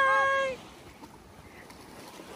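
A woman's long drawn-out sing-song call, held on one pitch, ends about half a second in. After it there is only the faint, even wash of small waves on the shore.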